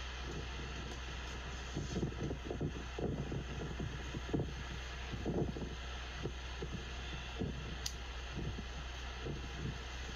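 Steady low outdoor city hum, with wind buffeting the microphone in irregular gusts, heaviest from about two to six seconds in.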